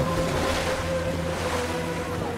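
A steady rushing, surging water sound effect for a figure made of water, laid over a low held musical drone of a few sustained tones.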